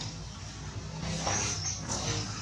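A long-tailed macaque gives a short, high call about a second in and a brief one near the end, over a steady low background hum.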